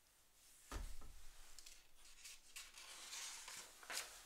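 Faint handling of a magazine page being turned by hand: a soft thump under a second in as the hand meets the page, then paper rustling and sliding, with a sharper slap of paper at the end.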